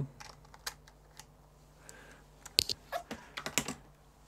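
Small, sharp clicks and taps from handling an oscilloscope lead and a 20:1 BNC attenuator as it is plugged onto a PicoScope's input. A few clicks are spread over the first second, and a quicker run of sharper clicks comes near the end.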